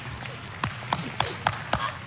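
A quick run of five sharp hand claps, evenly spaced about a quarter second apart, over a low steady background hiss.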